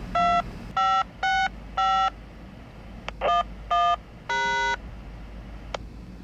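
Touch-tone (DTMF) tones heard over a railway radio: seven beeps, four in quick succession, then two, then a longer one. They are a tone command keyed to a radio-activated crossing.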